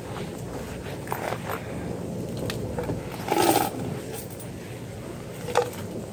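Background noise of a convenience store interior, with a few faint clicks and a short noisy burst about three and a half seconds in.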